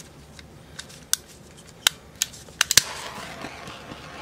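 Handheld butane torch being lit: a series of sharp clicks from its igniter, then from about three seconds in the steady hiss of the flame.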